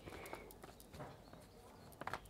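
Faint, sparse clicks and light rustle of a tarot deck being shuffled in the hand.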